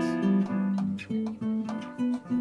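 Acoustic guitar played live, plucked and strummed notes, with an electric keyboard holding notes underneath.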